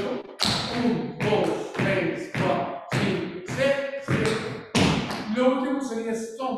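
Shoes striking a hard polished floor in a quick run of dance steps (taps, digs and touches), about two strikes a second, with a voice over them.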